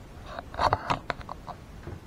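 Handling noise from the camera being moved: a short run of rustles and light clicks in the first second and a half, then quieter room background.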